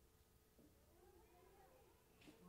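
Near silence, with a faint wavering call, like a distant voice, from about halfway through.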